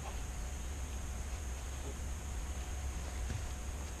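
Faint rustling and a couple of soft clicks as a ratchet strap is threaded through a plastic water cooler's handle, over a steady low background rumble and hiss.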